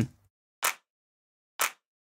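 Layered electronic clap sample from Steinberg's Backbone drum sampler, played twice about a second apart. Each hit is a short burst, with silence between them.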